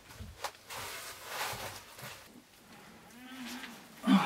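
Wooden planks knocking and rustling as a person moves about on log steps and a plank bench, with a short low creak of the wood taking weight near the end.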